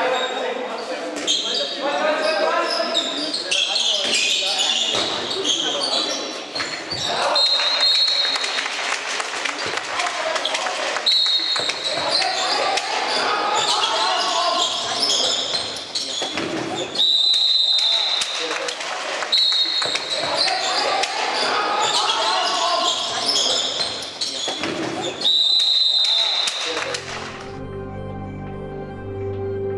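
Indoor handball play: sneakers squeaking sharply on the sports hall floor in short bursts, several times, with the ball bouncing and players' voices calling out.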